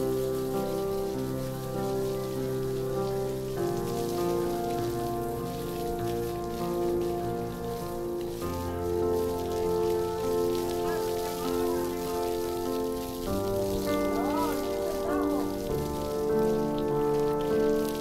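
Background music of slow, sustained organ-like chords changing every few seconds, over a steady hiss of water spraying from a hose onto a horse.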